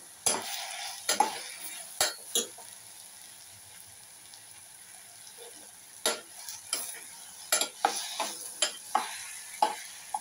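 Metal spoon stirring and scraping against the inside of a stainless steel pot over a light sizzle. A few knocks and scrapes come early, then a pause, then a quicker run of strokes from about halfway through.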